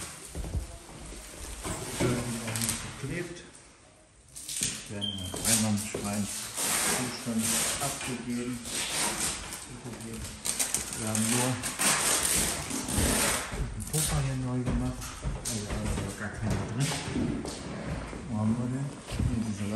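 Mostly speech: voices talking indistinctly, with brief knocks and handling noises in between.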